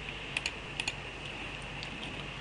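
Several light clicks at a computer, some in quick pairs, over a steady low hum.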